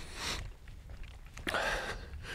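A man breathing close to the microphone: a short breath at the start and a longer, louder one about a second and a half in, over a steady low rumble.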